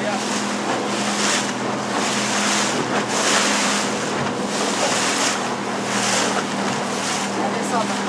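A small boat's motor running with a steady hum under loud rushing water and wind noise on the microphone. The rush swells and fades about once a second as the hull meets the chop.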